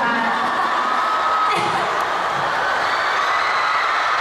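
Audience cheering and whooping, a steady wall of high voices.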